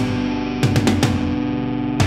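Rock music: a distorted electric guitar sustains a chord, with a quick run of sharp hits about half a second in.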